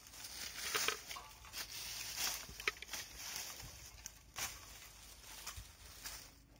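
Metal-toothed rake dragging and scraping through dry leaves and twigs in a run of uneven rustling strokes, one of the strongest about four seconds in.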